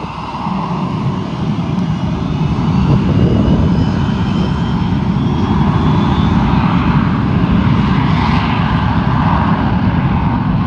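McDonnell Douglas MD-83's two rear-mounted Pratt & Whitney JT8D turbofans spooling up to takeoff thrust as the jet starts its takeoff roll. The noise builds over the first few seconds, then holds loud and steady, with a faint whine rising in pitch over it.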